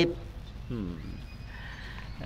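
A pause in speech amplified through a microphone: low steady hum, with one short, faint, falling voice-like sound just under a second in.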